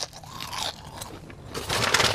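A person biting and crunching on a piece of fast food close to the microphone, starting with a sharp click and getting louder toward the end.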